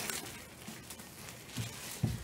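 Faint crinkling and rustling of clear plastic wrap as gloved hands pull it off a trading-card box, with a few soft clicks.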